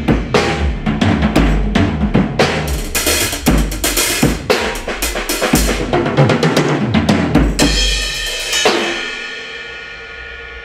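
Acoustic drum kit played busily, with bass drum, snare and cymbal strikes, heard through the Yamaha EAD10 drum mic system with its Dyna Phaser effect preset. Near eight seconds in the playing stops on a final crash that rings out and fades away.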